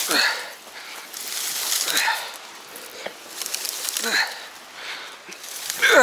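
A man breathing hard and grunting with effort, one strained breath about every two seconds, while hauling a heavy dead log and branches over sand, with dry branches rustling and scraping.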